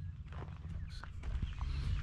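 A few footsteps on gravel, irregular and fairly faint, over a steady low rumble.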